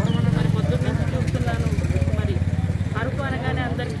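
A motor vehicle's engine running close by under a woman's speech, its low, fast-pulsing hum loudest at first and fading away after about three seconds.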